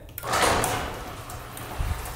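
Overhead sectional garage door opening under its electric opener, set off by the newly rewired smart controller: a rumbling roll of the door along its tracks that starts about a quarter second in and eases off, over the opener motor's hum, with a low thump near the end.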